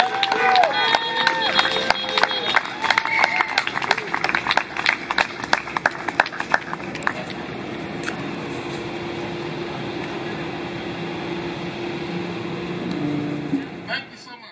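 Scattered applause and voices from an outdoor audience as a live song ends. The clapping dies away after about seven seconds, leaving a steady outdoor background hum.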